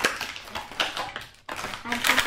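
Plastic crinkling as hands rummage in a plastic shopping bag and pull out a cellophane-wrapped toy package: quick irregular rustles with a brief gap about one and a half seconds in.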